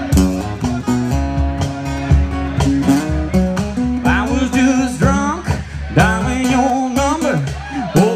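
Two acoustic guitars playing live, with picked, ringing notes, and a man's voice coming in singing about halfway through.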